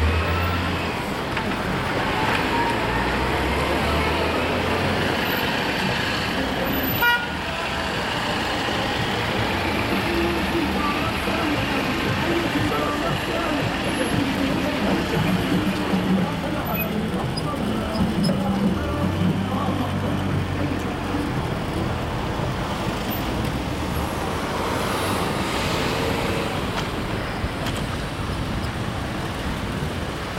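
Busy city street traffic: car and van engines passing close, with horns tooting and people's voices in the background.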